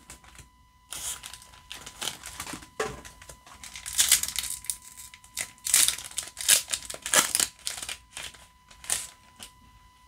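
Foil trading-card booster-pack wrapper being crinkled and torn open, a run of irregular crackly rustles that starts about a second in and goes on for several seconds.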